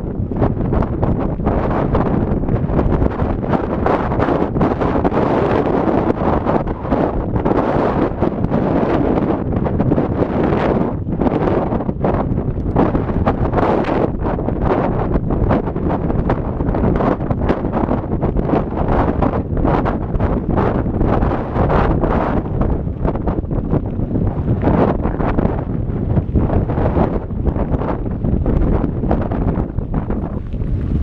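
Loud wind noise buffeting the microphone of a camera carried on a moving mountain bike. Frequent short knocks and rattles come through from riding over a bumpy dirt and gravel track.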